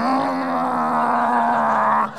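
A man's voice holding one long, steady droning tone for about two seconds, a mouth sound effect imitating a VCR starting to play a tape.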